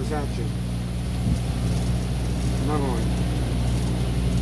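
Pontoon boat's outboard motor running at a steady cruising speed, an even low hum over a constant rushing noise, with a faint voice briefly about three seconds in.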